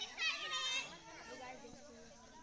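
High-pitched voices of bystanders: one calls out loudly in the first second, then quieter chatter continues.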